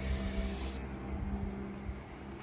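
A distant engine humming steadily, with a low rumble beneath it.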